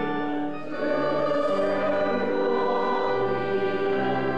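Congregation singing a hymn together, held chords with instrumental accompaniment, with a brief break between phrases just under a second in.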